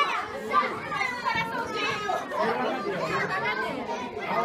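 Several people talking and calling out at once, with children's voices among them.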